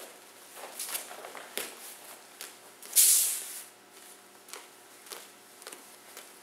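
A martial artist's movements and breath during a solo run-through of a kenpo technique. There are a few short swishing noises, with one loud hiss lasting about half a second, about three seconds in.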